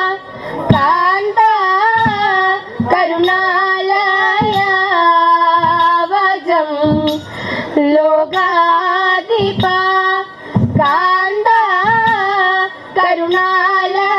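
Girls' voices singing a slow Malayalam Thiruvathira song, a melody of long held, wavering notes, over sharp beats about once a second.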